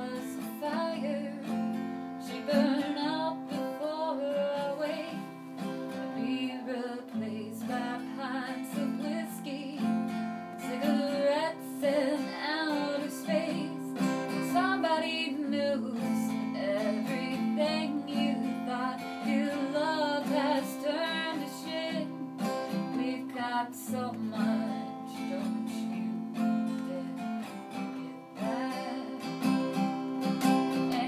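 A woman singing to her own strummed steel-string acoustic guitar, a slow song with sustained chords under a wavering vocal melody.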